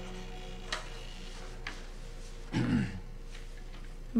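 Show soundtrack playing quietly: a low, steady held drone with a couple of soft clicks, and a short throat-clearing sound a little past halfway.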